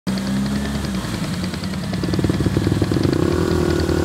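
A vehicle engine running steadily, with a pulsing beat from about midway and its pitch rising near the end as it revs.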